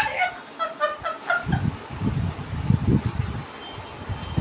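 A woman laughing: a few short pitched bursts in the first second or so, then breathier, lower pulses.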